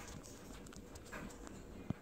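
Faint background noise with a few soft clicks and one sharper click near the end.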